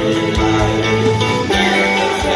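Live rock band playing an instrumental passage with no vocals, the guitar prominent over keyboards and drums, heard from the audience in a theatre.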